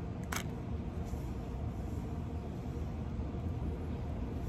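A steady low outdoor rumble with one short, sharp click about a third of a second in.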